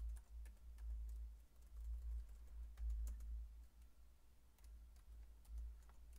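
Typing on a computer keyboard: irregular key clicks as figures are entered, each with a low thump.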